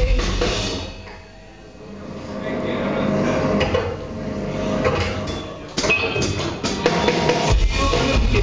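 Live rock band with drums and electric guitar playing a break in the song. About a second in, the full band drops to a quiet passage without bass, then drums build it back up, and the full band with heavy bass comes back in near the end.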